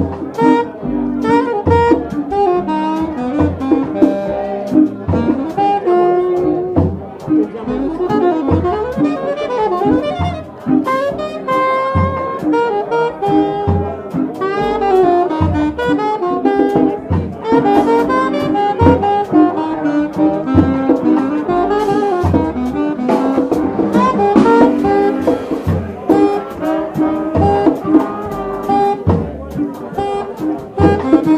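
Live jazz band playing: a saxophone carrying a moving melody line over double bass and drum kit, with a steady beat.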